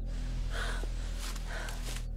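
A woman gasping for breath in fear: two sharp, breathy gasps about a second apart, over a steady hiss that cuts in and out abruptly.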